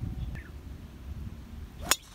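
A driver striking a golf ball off the tee: the brief whoosh of the swing, then one sharp click of impact near the end, the loudest sound. Low outdoor rumble and a faint bird chirp lie underneath.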